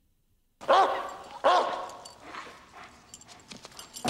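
A dog barking twice, loud and sudden, about a second in and again under a second later, with fainter scattered sounds after.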